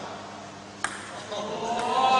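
A table tennis ball in play gives one sharp click about a second in, with a fainter click near the end. Men's voices swell up after it.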